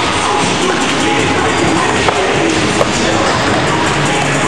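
Loud music at a steady level, with two short sharp knocks about two seconds and nearly three seconds in.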